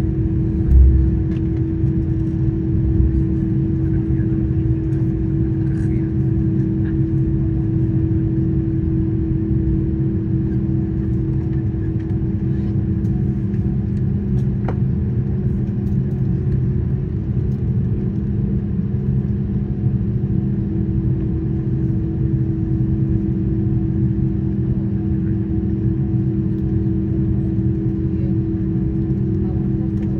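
Steady cabin rumble of an Airbus A330 taxiing, heard from inside the cabin, with a constant low hum running under it. A single low thump about a second in.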